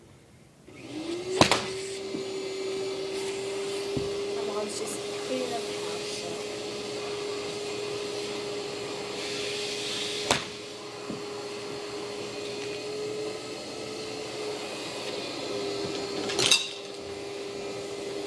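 Golf club striking balls off carpet into a practice net: three sharp hits, about a second and a half in, about ten seconds in and near the end. Under them a machine's steady hum starts up about a second in, rising briefly to a held tone.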